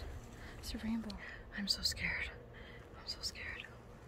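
A woman whispering a few quiet words under her breath, with short breathy hisses between them.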